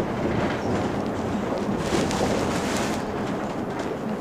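Mercedes-Benz Citaro G C2 NGT articulated natural-gas city bus under way, heard from inside: a steady rumble of engine and road noise with a few light clicks and rattles.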